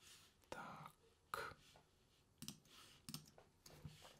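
Faint computer mouse clicks, about five spread through a few seconds of near silence, with soft breath sounds close to the microphone.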